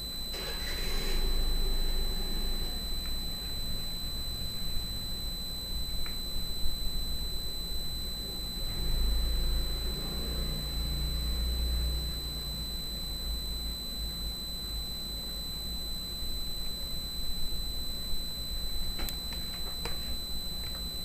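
Background room noise: a steady low hum with thin, steady high-pitched whines over it. A brief rustle comes about a second in, a low rumble swells in the middle, and a few faint clicks come near the end.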